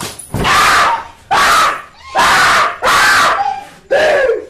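Loud human yelling: four long, wordless shouted cries, about one a second.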